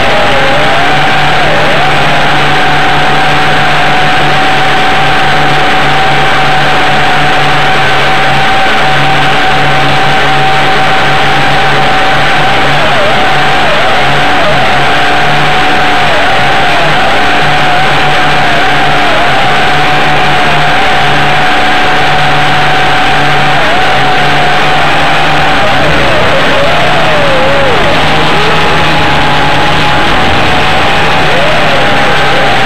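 WLToys V262 quadcopter's motors and propellers whining very loudly with a steady pitch. The pitch dips briefly now and then, more often near the end.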